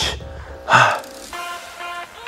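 A man's short, loud exhale of effort during a kneeling dumbbell row, about three-quarters of a second in, over background music with sustained tones.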